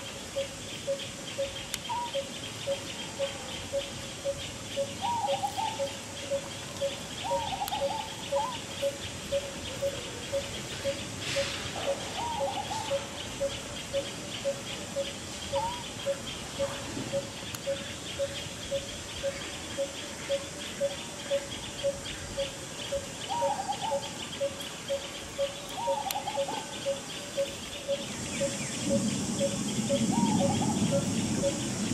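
Birds calling: one bird repeats a single short note evenly about twice a second throughout, while short chirps come every few seconds, over a steady high insect buzz.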